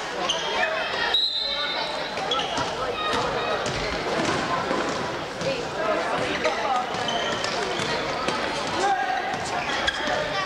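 A basketball being dribbled on a hardwood gym floor, over the steady chatter of spectators' voices; a brief high steady tone sounds about a second in.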